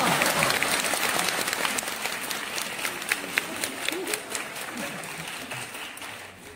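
Theatre audience applauding, loud at first and dying away steadily.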